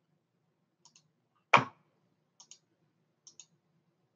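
Clicking at a computer while switching between applications: a few soft double ticks, like a button pressed and released, with one louder, sharper click about a second and a half in.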